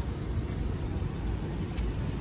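Low, steady rumble of the Mercedes GL450's idling V8 heard through the open door, mixed with outdoor background noise, and a faint click near the end.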